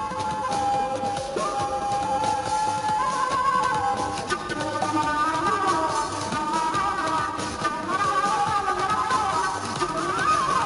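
Concert flute playing a melody of held notes that step between pitches, live on stage, over a backing with steady percussion and electronic elements.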